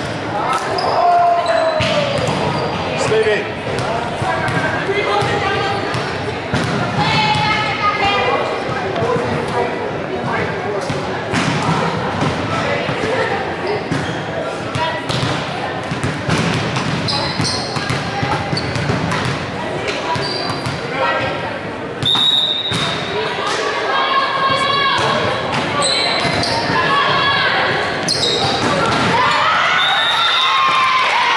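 Indoor volleyball being played in a large echoing gym: the ball bouncing on the hardwood floor and being struck, with players and spectators calling out and chattering. A short referee's whistle sounds about two-thirds of the way through.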